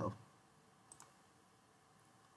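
Two quick computer mouse clicks close together, about a second in, against faint room tone.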